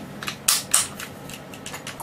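Clacks and clicks from handling a King Arms AK-74M airsoft electric rifle, its selector lever and trigger being worked: two sharp clacks about half a second in, then lighter clicks near the end.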